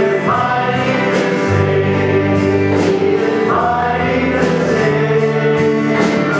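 Live worship band playing a praise song: several voices sing a melody over bass guitar, with drums and cymbals keeping a steady beat.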